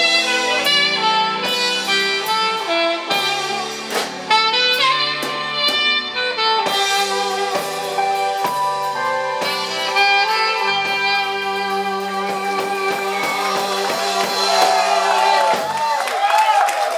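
Live band playing a song, with a saxophone holding long notes over electric guitar, keyboards and drums.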